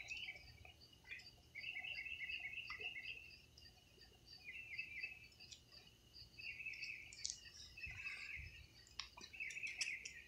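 Faint chirping of night insects, coming in repeated bursts about a second long over a steadier high pulsing, with a few light clicks.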